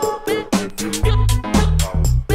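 Dance music played by a DJ from vinyl records through the sound system: a steady beat of about four drum hits a second over deep, held bass notes.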